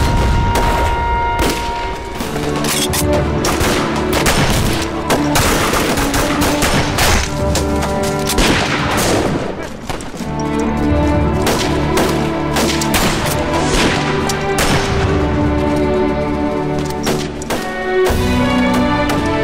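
Battle soundtrack: rapid gunfire and booming explosions, mixed under dramatic background music that comes in about two seconds in.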